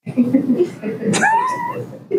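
People talking in a classroom, cut in suddenly. About a second in, a high gliding squeak or squeal sounds over the voices for under a second.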